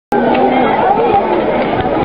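Many people chattering at once in a seated audience, the voices overlapping into a steady babble. It cuts in abruptly just after the start.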